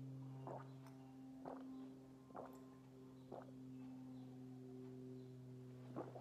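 A person gulping a drink from a glass: four swallows, about one a second, that stop after about three and a half seconds. A steady low hum runs underneath.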